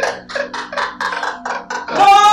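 Two men laughing hard together, a quick run of loud "ha-ha" bursts, about four or five a second.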